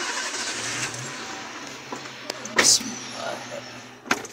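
Car engine starting and settling into a steady idle, with one loud sharp thump nearly three seconds in.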